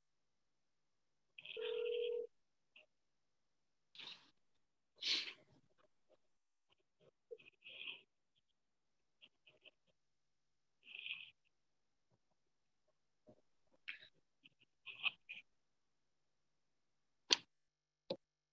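Faint, scattered room noises in a meeting room, heard through a microphone that cuts in and out: brief muffled sounds every second or two, and one sharp click near the end.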